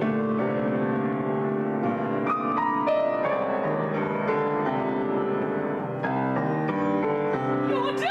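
Grand piano played solo: struck chords with a short melody line of single notes stepping down about two to three seconds in.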